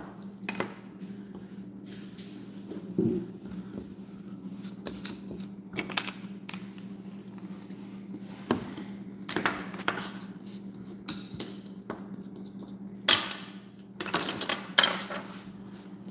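Small plastic and wooden toy sand tools tapping, clicking and scraping on a wooden tabletop as play sand is cut and shaped, in irregular light knocks with a few louder ones near the end. A steady low hum runs underneath.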